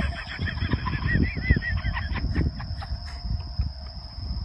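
Outdoor evening ambience: a steady high insect drone, a quick run of short rising-and-falling chirps in the first two seconds, and an uneven low rumble on the microphone.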